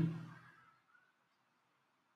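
The end of a man's spoken word fading out in the first half second, then near silence.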